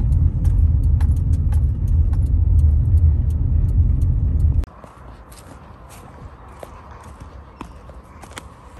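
Low rumble of car road noise with light clicks scattered through it. It cuts off abruptly a little over four and a half seconds in, leaving a much quieter background where the clicks go on.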